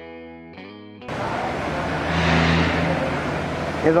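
Guitar background music for about the first second, then a sudden change to steady, loud workshop noise: a hiss over a low hum.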